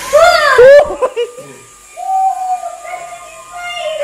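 A child squealing loudly in quick rising-and-falling cries for about a second, then holding one long high note from about two seconds in.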